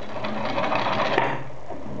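A steel linear rod rolling down a tilted glass mirror: a rattling rolling noise that swells for about a second, with a click near its end, then dies away as the rod rolls off. The rolling sounds uneven, the sign that the rod is bent rather than straight.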